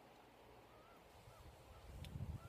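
Near silence: faint outdoor background with a low rumble, and a couple of faint short chirps about a second in.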